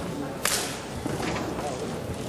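A single sharp snap of a taekwondo uniform (dobok) as a fast strike or kick is whipped out, about half a second in, with a low murmur of voices behind it.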